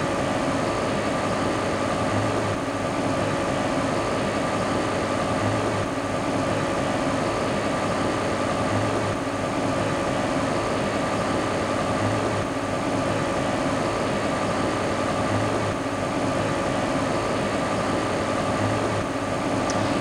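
Multi-nozzle 3D printer running while printing a part: a steady mechanical hum with a faint high whine.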